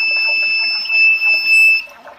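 Arduino water-level alarm's audible alarm sounding one steady high-pitched tone, which cuts off near the end. It is the warning that the water level is too low.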